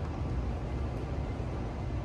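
A steady low rumble with a faint hiss over it, even throughout, with no distinct knocks, clicks or tones.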